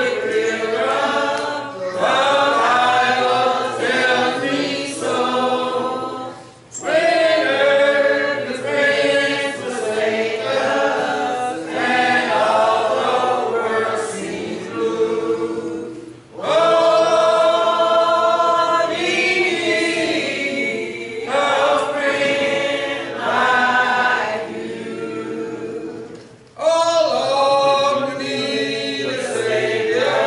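Church congregation singing a hymn a cappella, in long phrases with a short breath about every ten seconds.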